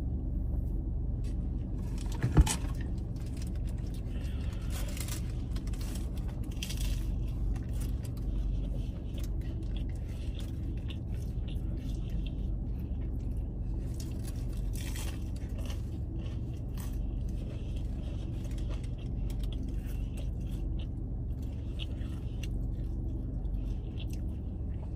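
Steady low rumble of a car cabin, with a paper food wrapper rustling and eating noises now and then. A single sharp click comes about two seconds in.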